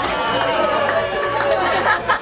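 Many people talking at once at a house party, over background music with a steady bass beat.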